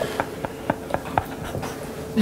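A handful of light, sharp clicks, about seven spread irregularly over two seconds, over a faint steady hum.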